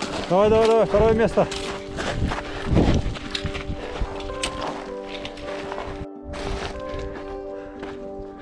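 Two or three loud whooping cheers in the first second and a half, over steady background music, with scattered footsteps crunching on rocky gravel.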